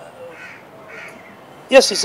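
Two short, faint bird calls about half a second apart over steady outdoor background noise, in a pause before a man's voice starts again near the end.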